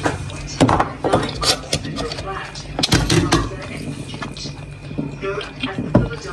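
Kitchen handling noise: short clicks, knocks and rustles as toppings are placed by hand onto a wrap lying on aluminium foil, with bits of low talk.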